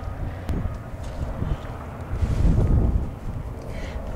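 Wind buffeting the camera microphone: a low, gusty rumble that swells loudest around the middle.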